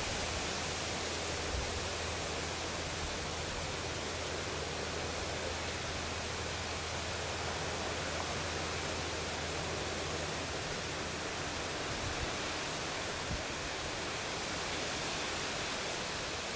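Steady, even outdoor background hiss with a low hum through the first two-thirds and a few faint ticks.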